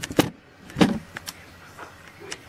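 A few brief knocks and rubs, the loudest a little under a second in: handling noise from the handheld camera being moved.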